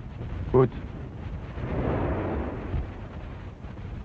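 A low rumble that swells about a second and a half in and fades a second or so later, over a steady low background noise; a man says one word just before it.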